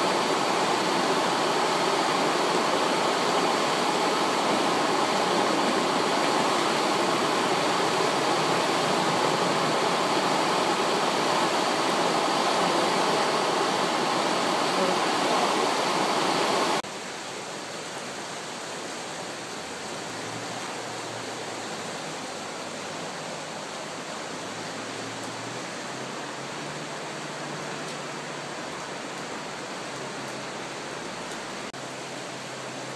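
The Brenta river in full flood, its muddy torrent rushing steadily through a walled channel. The rush drops abruptly to a quieter level about 17 seconds in.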